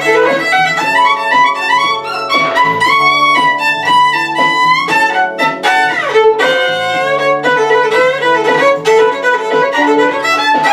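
Violin playing an improvised solo on the F sharp minor blues scale, with quick runs and slides and a long falling slide about six seconds in. A repeating bass line plays underneath.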